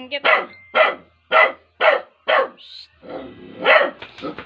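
A small dog barking repeatedly, six barks at about two a second, with a short pause before the last one.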